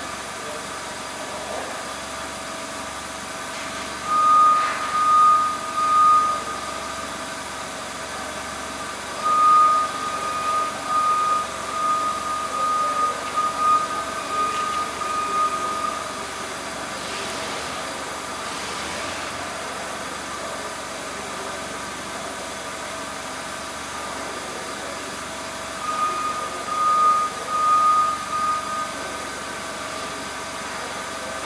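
A forklift engine idling steadily, broken three times by runs of a loud, high pulsing electronic warning beep.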